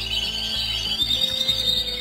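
Canaries singing: rapid, high-pitched trills of quickly repeated notes, over a steady low hum.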